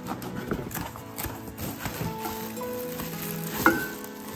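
Cardboard and plastic packaging rustling and crinkling as items are handled and unpacked from a box, with scattered clicks and one sharp knock near the end, under soft background music.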